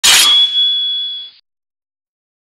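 Sword-strike sound effect: a sharp metallic clang with a single high ring that cuts off abruptly about a second and a half in.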